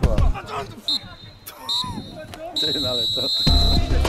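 Referee's pea whistle blown on the football pitch: two short toots, then one long blast near the end.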